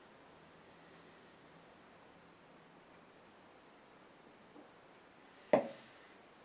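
Quiet room tone, then a single sharp knock near the end as a drinking glass is set down on a wooden box top.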